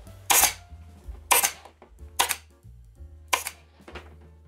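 Staple gun firing four times, about a second apart, driving small staples through the vinyl seat cover into the plastic seat frame. Background music plays underneath.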